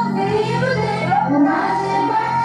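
Music: a high voice singing a melody over a steady, sustained low accompaniment.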